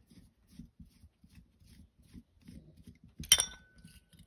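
Small metal parts and tools being handled while a carburetor's idle mixture screw is backed out: faint scraping and fiddling, then one sharp metallic clink with a short ringing tone about three seconds in.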